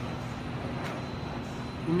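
Steady hum and whir of a corrugated-board flexo printer-slotter running, with a faint steady tone over it.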